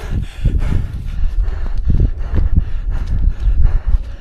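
Military boots tramping up a stony mountain path at a hard walking pace, about two steps a second, with the hiker's heavy breathing. Wind rumbles on the microphone throughout.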